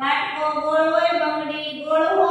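A woman's voice reading words aloud in a slow, drawn-out sing-song chant, each word held for a second or more.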